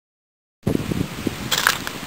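Silence, then about half a second in wind starts buffeting the microphone, with a few sharper crackles in the second half.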